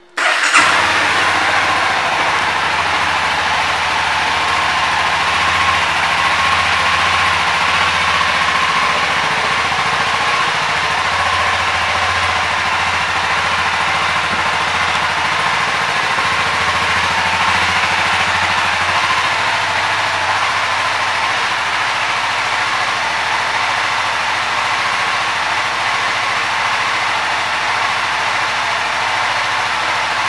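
A 2019 Honda CBR300R's single-cylinder engine starting on the electric starter and catching at once, then idling steadily.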